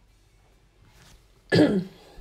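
A person clears her throat once, short and loud, about one and a half seconds in.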